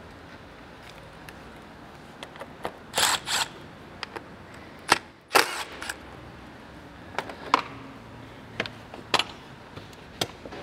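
Scattered sharp clicks and short plastic clatters as the airbox lid and its fittings on a Toyota Prado are worked loose with hand tools and a small cordless driver, over a steady low hiss.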